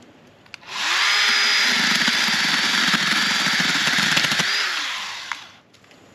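Small battery-powered chainsaw spinning up, cutting into brush for a few seconds with a rougher, crackling sound under the motor's steady whine, then winding down.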